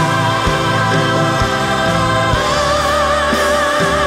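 Church choir singing a gospel song, voices holding long notes with vibrato over a regular beat of low strokes about once a second.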